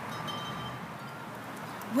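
Quiet outdoor background with faint bird calls and no clear single event; a woman's voice starts right at the end.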